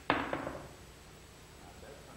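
A billiard ball shot off a beer bottle hits the pool table with a sharp knock, then knocks twice more as it bounces and settles into a roll.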